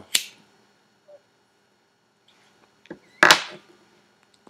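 A cigarette being lit with a lighter: a few small clicks, then one short, sharp hiss about three seconds in.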